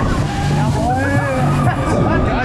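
Voices calling out over fairground music with a repeating bass line, heard aboard a running Break Dance ride.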